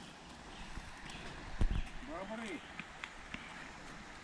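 A single short low thump about one and a half seconds in, over faint rustling and a few light ticks.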